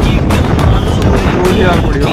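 Wind buffeting the microphone from a moving car, a loud low rumble, with background music playing over it.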